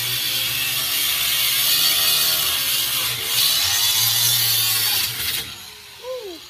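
Corded angle grinder with a cut-off wheel cutting into the steel panel of an ATM cabinet near its lock: a loud, steady grinding hiss over the motor's hum. The cut stops about five seconds in and the sound drops away.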